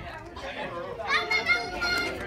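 Young children playing and calling out, with high-pitched voices that get louder about a second in.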